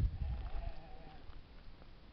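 An animal bleating once, a faint wavering call of about a second, with a low rumble at the start that fades.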